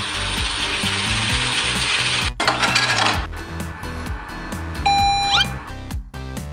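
ATM cash-dispenser sound effect: a whirring hiss of banknotes being counted out, broken briefly a little past two seconds and resuming for under a second, then a beep and a quick rising chirp near the end, all over background music.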